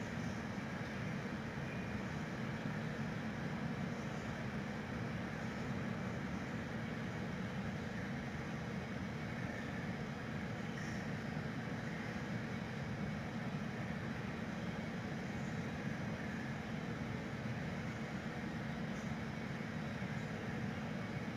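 Steady low rumbling background noise, even and unbroken, with a few faint soft ticks now and then.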